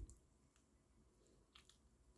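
Near silence, with two faint clicks about one and a half seconds in.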